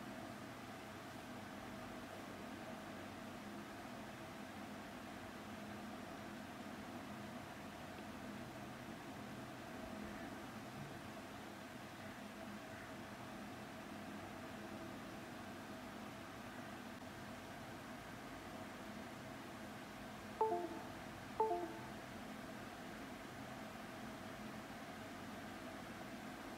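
Quiet room tone: a steady low hiss with a faint hum. Two short pitched blips, about a second apart, come a little after 20 seconds in.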